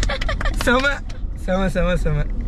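People laughing and talking inside a moving car, over the steady low rumble of the cabin.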